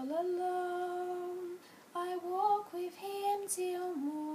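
A young woman singing unaccompanied: one long held note, then after a short breath a run of shorter notes that rise and fall.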